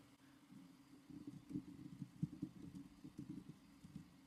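Faint, muffled computer keyboard typing: irregular soft keystrokes starting about a second in, over a low steady hum.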